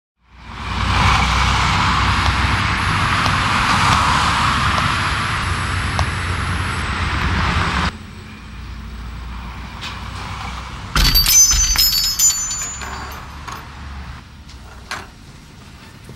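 Street traffic noise that drops suddenly about halfway through to a quieter rumble. A few seconds later a high, bell-like ring starts sharply, followed by scattered clicks and clatter.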